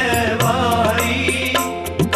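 Sikh devotional kirtan: men singing a shabad together over a harmonium's held reed chords, with regular tabla strokes keeping the beat.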